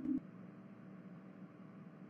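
The tail of a steady electronic humming tone, used as a hypnosis sound effect, cuts off just after the start. Then a faint hiss, close to silence.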